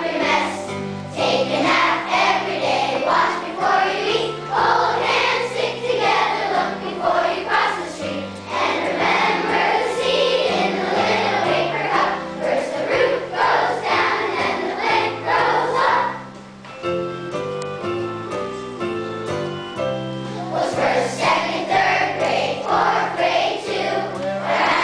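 A choir of third-grade children singing a song in unison over instrumental accompaniment. About two-thirds of the way through, the voices stop for around four seconds, leaving the accompaniment alone, then the singing resumes.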